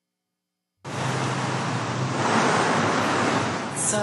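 Steady outdoor street noise, a wash of wind on the microphone and passing traffic with a low hum underneath, cutting in suddenly about a second in.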